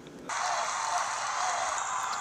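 A steady, even background hiss starts abruptly about a third of a second in and holds at one level. There is no speech over it.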